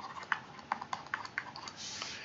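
Stylus writing on a tablet screen: a string of faint, irregular taps and clicks as the pen tip strikes and lifts from the glass.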